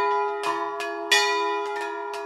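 Bells ringing in a quick, uneven peal, with several strikes and each one's ring carrying over into the next. The loudest strike comes a little past halfway.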